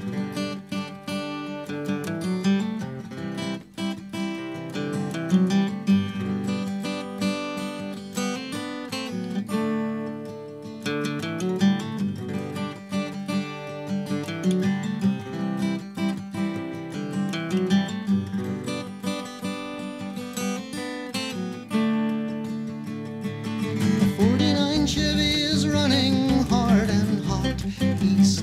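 Instrumental introduction of a song, led by strummed and picked acoustic guitar over a steady low line. Near the end a melodic part with bending pitch comes in.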